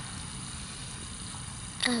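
Steady low background rumble with no distinct events, during a pause in a child's talk.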